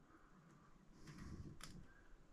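Near silence: faint handling of small starter-motor parts as a ring is fitted onto the drive gear, with one light click near the end.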